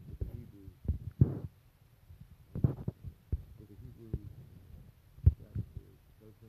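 Irregular dull thumps and knocks from a phone being handled and tapped close to its microphone, with two brief rustling scuffs; the loudest knock comes near the end.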